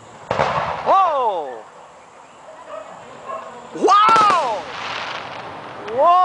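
Two firework bursts, about a third of a second in and near four seconds in, each followed by a pitched sound that rises and then slides down in pitch.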